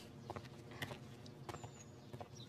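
Quiet background with a few faint, irregular clicks or taps about half a second apart, and a brief faint high chirp late on.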